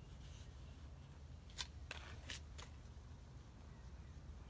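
Quiet room tone with four faint, light clicks spread over about a second, starting about one and a half seconds in.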